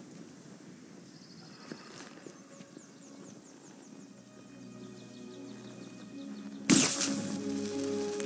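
Film score fading in over quiet outdoor ambience, with sustained tones that build. Near the end a sudden loud noisy burst, the loudest sound here, hits over the music.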